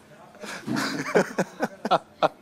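Men's voices talking: speech only, with a short rough, noisy voice sound about half a second in.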